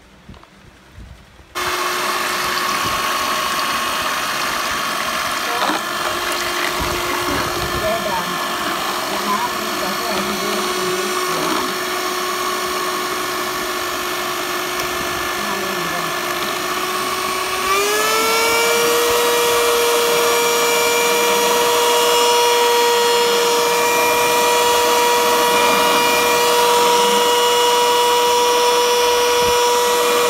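An electric hand mixer switches on about a second and a half in and runs with a steady motor whine, its beaters whipping a thick oil mixture in a plastic jug. About halfway through, the whine glides up to a higher pitch and holds there.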